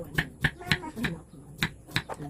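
Kitchen knife chopping bitter gourd (ampalaya) on a wooden cutting board, about four sharp chops a second.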